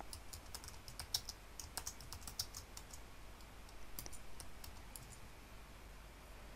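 Faint, irregular typing on a computer keyboard: scattered key clicks, a few slightly louder than the rest.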